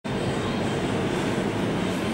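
Steady low background noise, heaviest in the bass, holding even with no clicks or changes.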